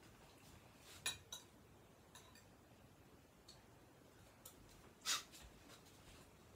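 Quiet room with a few short, sharp noises of a person moving about, the loudest about five seconds in, with fainter ticks between.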